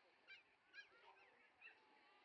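Faint, short, high-pitched animal calls, about four of them spaced roughly half a second apart.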